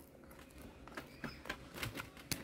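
Faint, scattered little crackles and taps as hands pick up and handle crisp fried banana fritters. This is the crisp batter crust crackling against the fingers and the other fritters.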